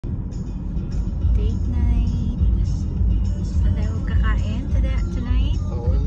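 Steady low road rumble inside the cabin of a moving car, with voices and music over it.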